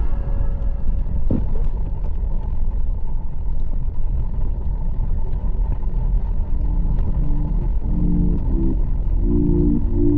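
Motorcycle riding at highway speed: a steady low rumble of wind and engine noise. Background music fades back in faintly from about six and a half seconds.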